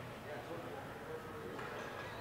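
Faint, distant voices over steady low room noise.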